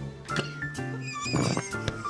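A comedy fart sound effect, a short rasping buzz about one and a half seconds in, over background music.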